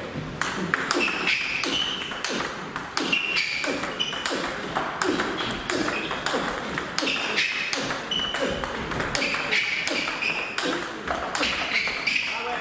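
Table tennis multiball drill: ping-pong balls fed in quick succession, each bouncing on the table and struck back with a rubber-faced bat. The result is a fast, steady run of sharp clicks.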